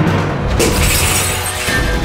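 Dramatic background music from a TV serial score, with a sudden crash-like sound effect about half a second in whose high hiss fades over about a second.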